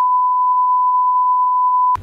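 Steady single-pitch censor bleep of about two seconds, a pure high tone that blanks out the speech entirely and cuts off sharply near the end.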